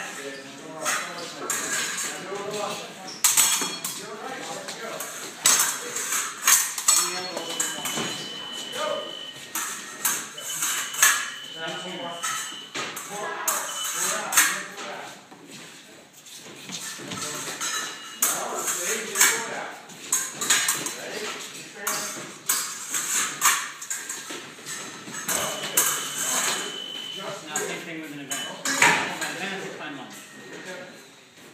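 Épée blades clashing and clicking against each other again and again as two fencers exchange actions, with three steady high beeps from the electric scoring machine signalling touches, about eight, eleven and twenty-six seconds in.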